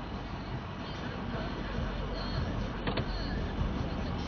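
Ford F-350 pickup's engine running as the truck creeps forward at low speed, heard from inside the cab, with a single sharp click about three seconds in.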